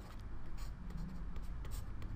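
Faint scratching and light taps of a stylus writing on a pen tablet, over a low steady hum.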